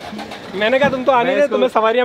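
Men's voices exclaiming without clear words, opening with a held, humming tone and going on into excited, rising and falling calls.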